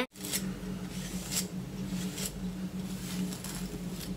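Hairbrush being pulled through long hair: a soft swish with each stroke, roughly once a second, over a steady low hum.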